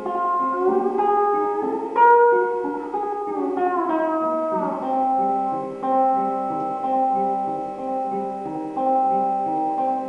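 Homemade box-bodied guitar of the cigar-box kind being played, with notes sliding up and then back down over the first half, then settling into a steady picked pattern of repeating notes.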